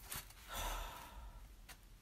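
A woman's breathy sigh about half a second in, with a faint click or two of handling.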